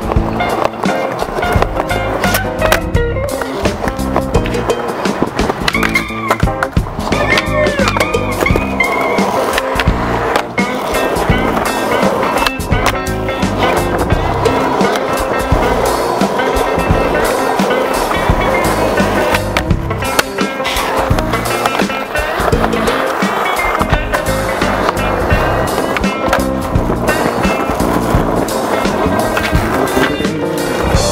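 Music soundtrack playing throughout, mixed with skateboard wheels rolling on concrete and the sharp clacks of the board popping and landing during tricks.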